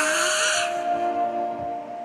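Cartoon soundtrack: a brief gliding sound with a hiss above it fades out in the first half-second, then soft background music with long held notes.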